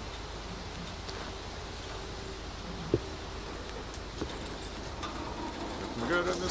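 Pickup truck's engine running slowly as it reverses a dump trailer, a steady low hum, with a sharp click about three seconds in.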